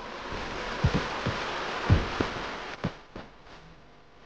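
Creek water running over rapids, an even rushing noise, with a few low knocks of the camera being handled; the rushing fades away about three seconds in.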